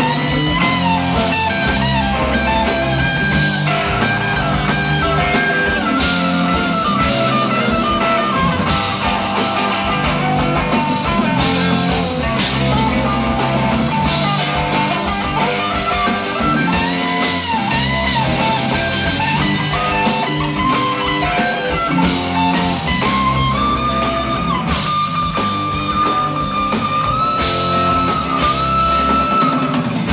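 Rock band playing an instrumental passage: a lead guitar plays bending, sliding notes over bass and a drum kit, holding one long high note near the end.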